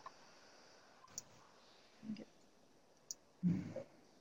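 Faint computer-mouse clicks, one about a second in and another about three seconds in, with a couple of brief soft vocal murmurs between them.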